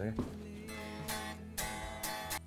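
Stagg electric guitar strummed, chords ringing with fresh strums about a second in and again near the end.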